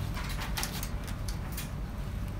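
A few light clicks and rattles of welded-wire mesh being handled against the cage's wooden frame, over a low steady hum.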